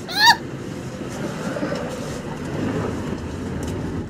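Steady road and engine noise inside a moving car's cabin: an even low rumble with no distinct events.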